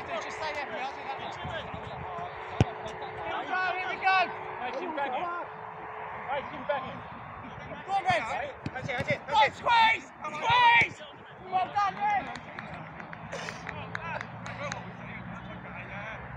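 Football players shouting to each other during play, the calls loudest and most frequent in the middle stretch, with one sharp thud of a football being kicked a few seconds in.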